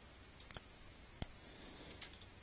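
A few faint, sharp clicks, the clearest a little past a second in, over quiet room tone.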